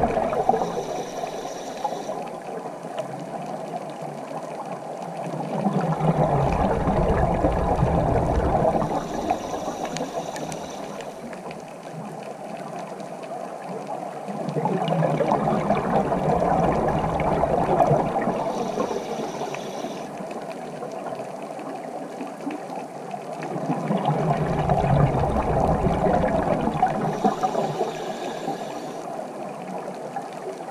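Scuba diver breathing through a regulator underwater: a short hiss on each inhale, then several seconds of rumbling exhaled bubbles, repeating about every nine seconds.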